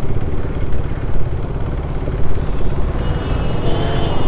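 KTM Duke 390's single-cylinder engine running as the bike rides through slow city traffic, a steady low rumble mixed with road and traffic noise.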